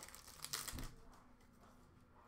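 Faint rustling of hockey trading cards being handled, with a few soft crinkles between about half a second and a second in.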